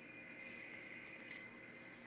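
Near silence: faint room tone with a thin, steady high hum.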